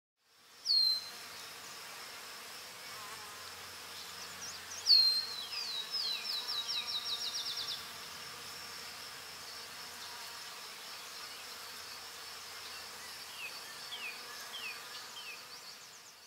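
A steady chorus of insects in the grass with bird whistles over it: one down-slurred note about a second in, then a run of down-slurred notes that quickens into a trill from about five to eight seconds, and a few fainter notes near the end.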